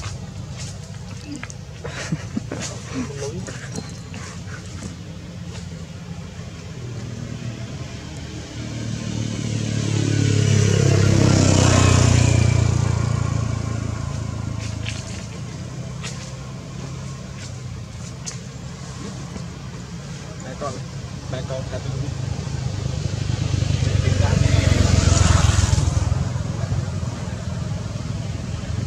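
Two motor vehicles passing by, one about ten seconds after the other, each swelling up and fading away over several seconds above a steady low rumble.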